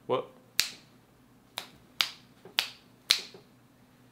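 Finger snapping: five sharp snaps at uneven spacing, after a short voiced sound right at the start.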